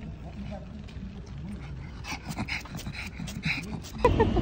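A small dog sniffing hard at a wall, a rapid run of short quick sniffs in the second half, over faint background voices.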